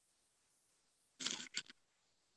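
Near-silent room tone broken about a second in by two brief noises, a longer one and then a shorter one just after it.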